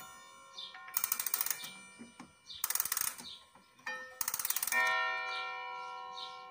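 Soviet 1960 wall clock: three bursts of rapid clicking from the movement as the hands are turned by hand. Near the end its hammer strikes the gong once, the single half-hour strike, which rings on with a slowly fading tone.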